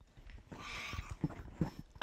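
Soft rustling with a few short low knocks: handling noise around the panel table between speakers.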